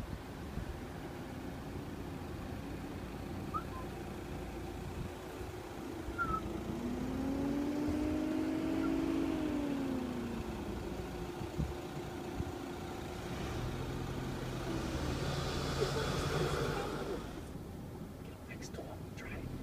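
Car engine and road noise through an open car window. In the middle an engine note rises, holds and falls away. Near the end a low engine hum grows louder as the car moves off.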